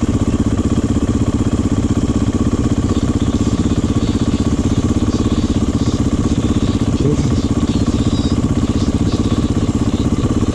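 Beta dirt bike engine idling steadily.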